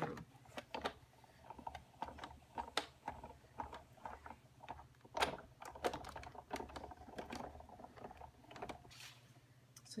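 Big Shot die-cutting and embossing machine being hand-cranked, the plastic platform, cutting pads and embossing folder passing through its rollers with irregular clicks and knocks over a low rumble.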